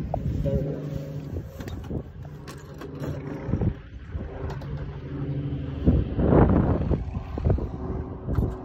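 Steady drone of a light aircraft's piston engine, with wind buffeting the microphone about six seconds in.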